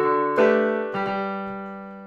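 Short keyboard theme music: piano chords, with new chords struck about half a second and a second in, the last one held and slowly fading.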